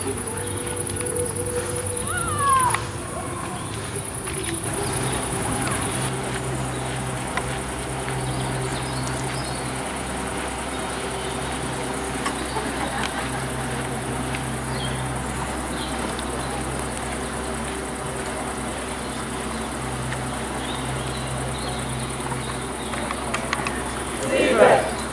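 Steady outdoor evening ambience: a low hum with insects chirping and faint distant voices, and a short falling whistle about two and a half seconds in.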